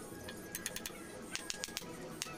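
Quick, light taps of a claw hammer on a steel knife blade set in a wooden handle, a few about half a second in and a quicker run near the end, over background music.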